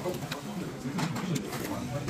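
Low murmur of voices at the table, with a few light clicks of chopsticks against a stainless-steel noodle bowl.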